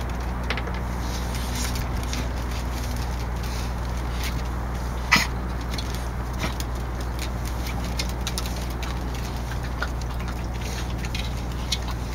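Steady low background hum with scattered light clicks, and one short, sharp sound about five seconds in that is the loudest moment.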